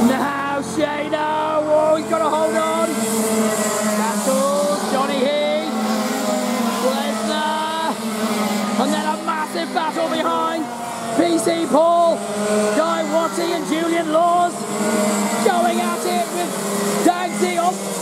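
Racing kart engines, largely two-strokes, running as a pack of karts laps the circuit, with voices heard over them.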